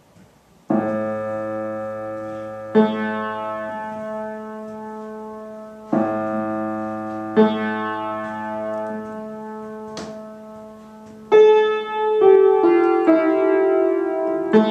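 Vintage Tokai upright piano being played: a sustained chord struck about a second in and another a couple of seconds later, left to ring, the same pair repeated about six seconds in, then quicker chords and notes from about eleven seconds.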